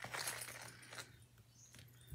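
Faint rustle of a clear plastic bag with light metallic clinks of a small watch pendant and chain as they are handled and drawn out of the bag, mostly in the first second.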